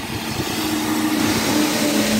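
A lorry approaching and passing on a wet road: tyre hiss on the soaked surface swells as it nears, over a steady engine drone, with heavy rain falling.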